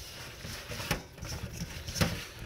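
Hand tossing seasoned porgy fish with corn pieces, okra and carrots in a stainless steel bowl: wet, irregular squishing and shuffling of the food, with a sharper knock about a second in.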